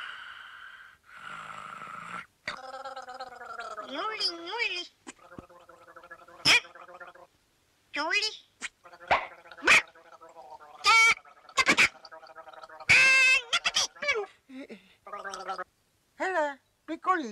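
Wordless cartoon character vocal noises: voice-like calls that rise and fall in pitch and some held steady, in short runs with brief pauses, with a few sharp clicks between them.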